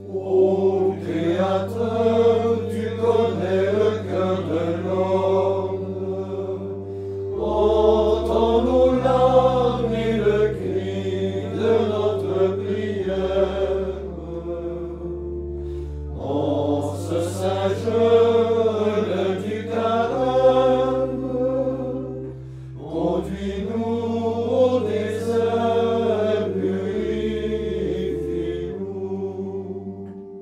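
A small men's choir of friars singing a hymn together in phrases, over sustained organ chords that change every few seconds.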